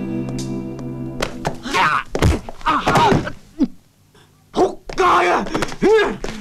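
A held music chord that cuts off about a second in, followed by a run of thuds from blows and a man's pained groans and cries in a film beating scene, with a brief near-silent break about four seconds in.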